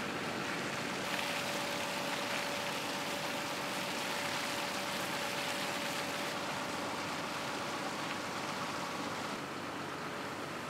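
A tractor engine running steadily under a rushing, splashing noise of slurry flowing from the dribble-bar boom's many trailing hoses onto the crop, with a faint steady whine.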